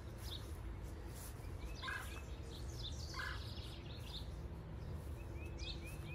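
Songbirds calling in the trees: short repeated chirps, with a few louder calls about two and three seconds in, over a steady low rumble of outdoor background noise.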